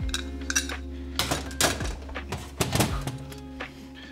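Metal clinks and light knocks from a Predator carburetor's aluminium parts being handled as its fuel bowl cover plate is taken off, about eight separate clicks, over background music.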